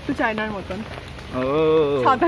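Rain falling on an umbrella overhead, under brief talk. Near the end a voice holds one long, wavering note.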